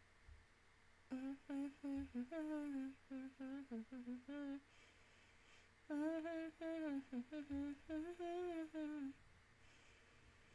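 A woman humming a tune with closed lips, in two phrases of short notes that step up and down in pitch, the first starting about a second in and the second about six seconds in.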